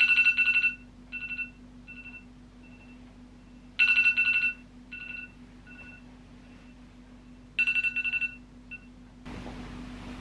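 Smartphone alarm going off: three bursts of rapid high-pitched beeps, about four seconds apart, each trailed by fainter repeats of the same beeps. Near the end the beeping stops and a soft steady noise begins.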